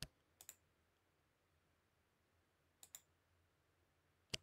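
A few computer mouse clicks, one at the start, a double click about half a second in and another double click near the three-second mark, with near silence between.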